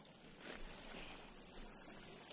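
Small lake waves lapping on a pebble shore, a steady wash with a slightly louder surge about half a second in.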